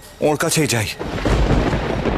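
A loud, low thunder-like rumble sound effect begins about a second in, after a brief spoken phrase, and carries on steadily.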